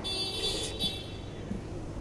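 A short airy rush of breath during mouth-to-mouth rescue breathing into a CPR training manikin, fading within the first second.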